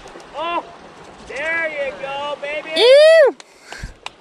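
A man's excited wordless shouts as a trout takes the fly: a short cry, then a run of quick yelps, and a loud long whoop about three seconds in that rises and falls in pitch. A brief low thump comes near the end.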